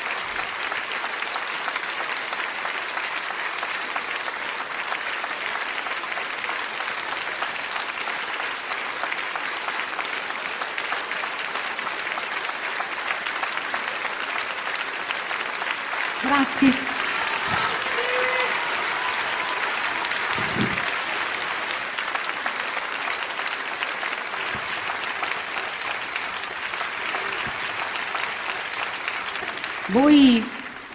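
Concert audience applauding steadily for a long stretch; a few voices call out over the clapping about halfway through.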